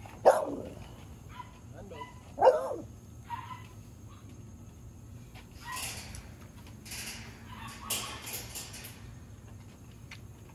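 A dog barks twice, about two seconds apart, each bark falling in pitch. Later come several short, breathy puffs of air from the American Bully having liquid dewormer put in its mouth.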